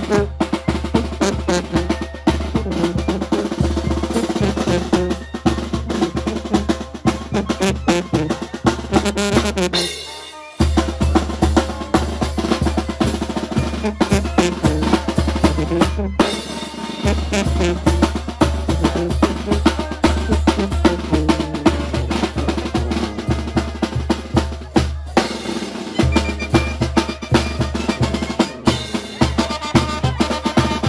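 Mexican banda playing on the march: rattling snare drum, bass drum and crash cymbal under a steady pulsing sousaphone bass line. The music drops briefly about ten seconds in and then picks up again.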